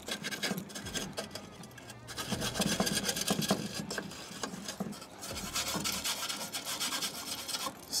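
Metal brush scraping and scrubbing burnt-on pellet buildup out of a Ninja Woodfire grill's pellet box, in quick irregular strokes.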